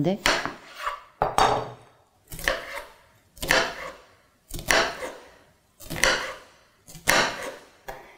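Chef's knife cutting an onion on a cutting board: a string of sharp knocks of the blade going through the onion onto the board, about one a second, each trailing off briefly.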